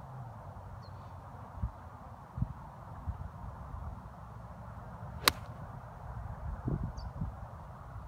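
Golf iron striking a ball off turf: one sharp click a little past the middle, over a low steady rumble.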